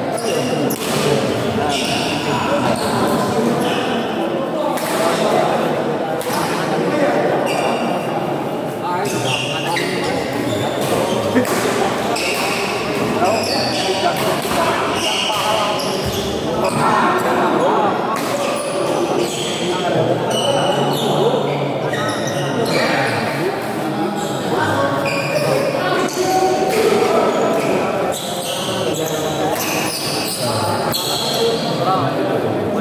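Doubles badminton rally in an echoing hall: repeated sharp racket hits on the shuttlecock and players' footsteps on the court, with voices in the background.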